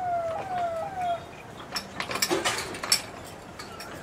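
Hand-cranked gear winch of a manual railway level crossing gate being worked: a falling whine repeats about twice a second and stops about a second in. Then come a run of sharp metallic clicks and clanks from the gears and lever.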